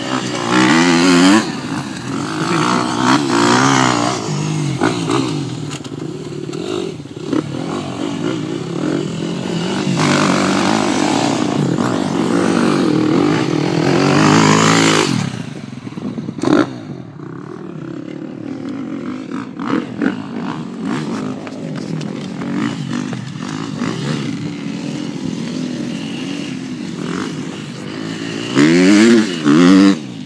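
Dirt bike engines, a 2013 KTM 250 SX-F four-stroke single among them, revving up and down over and over, the pitch climbing and dropping with throttle and gear changes. Louder in the first half, quieter after the middle, with a loud rev near the end.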